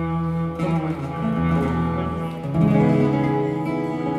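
Live instrumental music: a clarinet playing a held, changing melody over two acoustic guitars, swelling a little louder past the middle.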